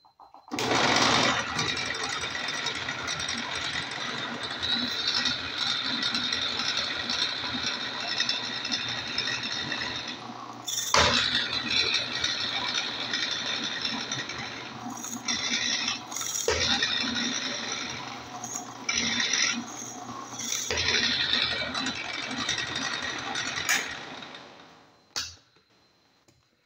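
Bench drill press running with a 22 mm spade bit boring into a wooden board: a steady motor hum under the bit's cutting noise, starting about half a second in, dipping briefly twice, and stopping shortly before the end.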